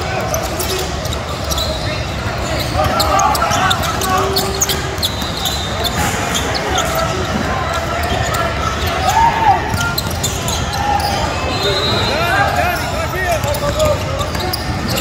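A basketball game in a large indoor hall: a ball bouncing on the hardwood court in short knocks, with sneakers and the voices of players and spectators calling out across the hall.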